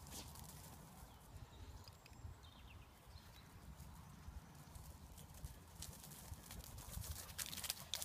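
Faint, quick footfalls of a cocker spaniel running over dry wheat stubble while carrying a crow, growing louder near the end as the dog comes close, over a low rumble.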